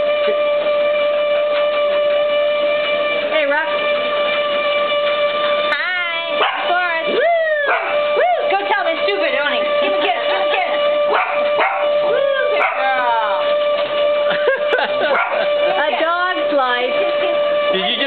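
Treadmill motor running with a steady whine, and a dog howling and yipping in several rising-and-falling bouts from about six seconds in.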